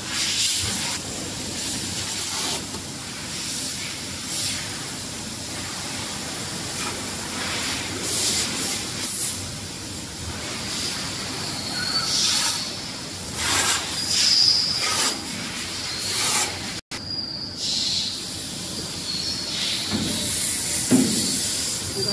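Steady hiss with scattered clicks and a few short, high squeaks as parts on the slitting shafts of a BOPP tape slitting machine are set by hand. The sound cuts out for an instant about two-thirds of the way through.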